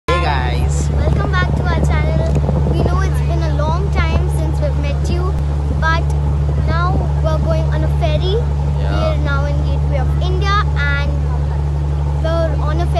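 Ferry's engine droning steadily, a loud, low, unbroken hum, with people talking and laughing over it.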